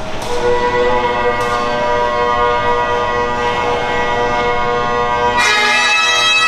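Bagpipes playing: held chanter notes over the steady drones, growing louder and brighter about five and a half seconds in.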